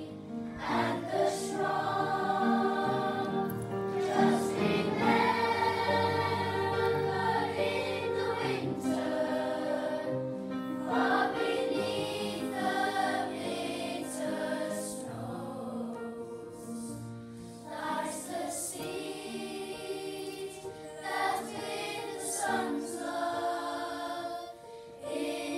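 Children's choir singing a slow song together in held notes, phrase by phrase with short breaks between.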